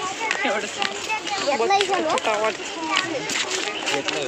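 Speech: people talking close to the microphone, with other voices behind them.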